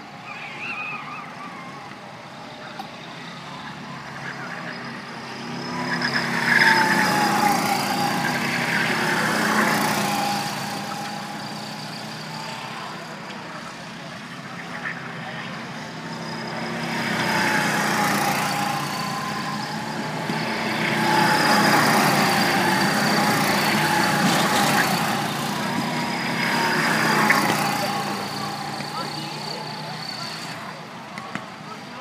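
Go-kart engines running as several karts lap the track. Their whine swells as karts come near and fades as they move off, with loud passes about six seconds in and again through the second half.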